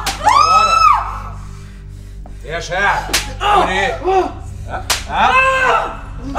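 Three sharp cracking blows, at the start, about three seconds in and near five seconds, each followed by a captive's high, drawn-out scream or pained cry. A low steady drone runs underneath.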